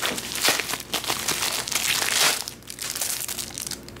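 Plastic bubble mailer being torn open and crinkled by hand, with the plastic wrap of a banknote bundle inside rustling. It is a dense, irregular crackle that eases off after about two and a half seconds.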